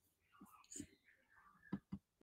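Near silence, with faint, brief voice fragments and a couple of soft ticks near the end.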